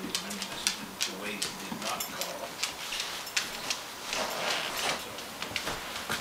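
Standard poodles' claws clicking irregularly on a hardwood floor as the dogs move around each other, over a steady low hum.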